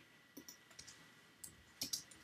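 Faint clicks of a computer mouse and keyboard: a couple of single clicks about half a second in and around a second and a half, then a quick cluster of keystrokes near the end as a comment is typed into the code.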